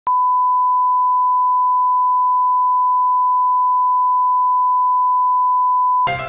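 Steady one-kilohertz reference tone, the line-up tone that goes with colour bars at the head of a video master. It is a single unbroken pure beep at constant level.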